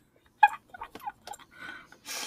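Soft laughter: a short voiced burst about half a second in, then a string of quiet breathy giggles and mouth clicks.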